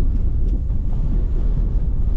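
Steady low rumble of a taxi's engine and road noise heard from inside the car's cabin as it pulls up.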